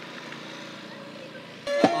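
A low, even outdoor background, then, about a second and a half in, Cambodian traditional music starts abruptly: a small string band with a bowed two-string fiddle and plucked strings.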